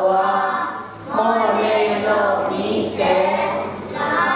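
A children's choir singing, led by a woman's voice on a microphone. The singing runs in phrases with a short break about a second in.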